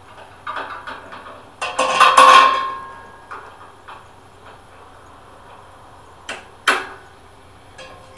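Steel hand tools, a socket wrench and a vise grip locking pliers, clanking against a steel trailer frame while the vise grip is clamped onto a spring-bracket nut. There is a loud, ringing metallic clank about two seconds in, a few lighter knocks, and two sharp clicks near the end.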